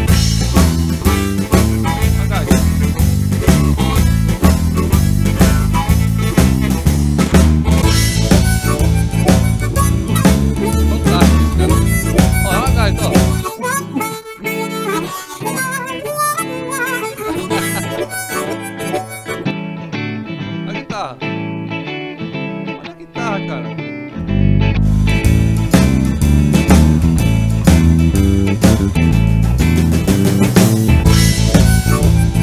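Ketron Event arranger keyboard playing a factory blues shuffle style, with a harmonica voice over a band accompaniment of drums, bass and guitar. About 13 seconds in, the drums and bass drop out for a break, and the full band comes back in about 24 seconds in.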